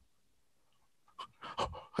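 A man's short, breathy vocal sounds and a couple of 'oh, oh' exclamations, starting after about a second of near silence, as he acts out a fumbling fielder.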